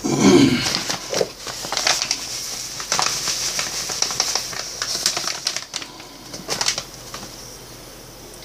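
A paper packet of instant mashed potato flakes rustles and crinkles as it is handled and tipped over the mixing tub. The sound is a run of irregular crackles, loudest at the start, and it dies down about seven seconds in.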